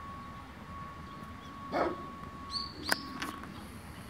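A dog gives one short bark a little under two seconds in, followed by a brief high bird chirp and a couple of sharp clicks near the end, over a faint steady high tone.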